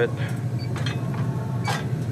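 Steady low hum of a refrigerated freezer case's fan motors and equipment running, with a short hiss near the end.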